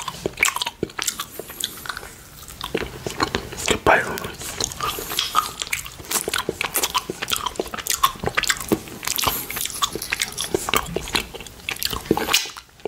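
Close-miked wet mouth sounds from sucking and licking a rainbow candy cane: a dense run of quick clicks, smacks and slurps with bites on the candy.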